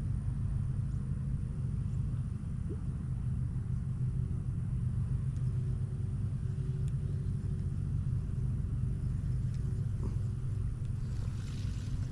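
Steady low rumble of wind buffeting an action camera's microphone.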